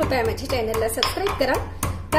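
Stone pestle pounding in a stone mortar, crushing garlic and other pieces: several sharp knocks of stone on stone, the clearest about a second in and near the end.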